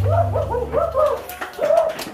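A high-pitched voice giving a quick run of short rising-and-falling yelps, then one longer call near the end, while the band's last low notes fade out.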